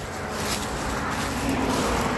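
A vehicle driving by on the road, its tyre and engine noise growing steadily louder as it approaches.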